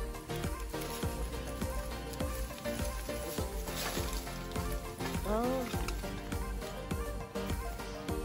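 Carrots being pulled up out of a garden bed by their leafy tops: a crackling rustle of foliage and soil, loudest about four seconds in. Background music plays throughout, and a brief voice-like sound rises and falls just after five seconds.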